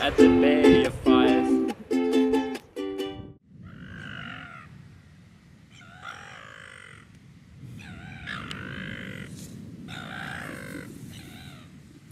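A ukulele tune plays and stops about three seconds in. Then a sleeping man snores four times, each snore about a second long and two seconds apart.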